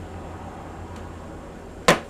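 A fired clay figurine is set down on a hard surface, giving one sharp knock near the end, over a steady low hum.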